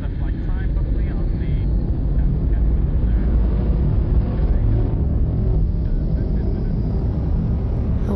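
Deep, steady rumble of an aircraft's engines and thrusters as the craft lifts off, a sound-design effect; it builds a little over the first few seconds, then holds.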